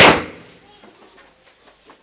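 A single loud, sudden burst of noise at the very start that dies away within about half a second, followed by faint scattered knocks.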